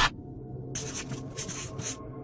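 A scratchy, flickering noise lasting about a second, starting a little under a second in, over faint background music.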